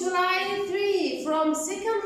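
Young children singing together with a woman's voice: a continuous sung line of held notes that slide in pitch.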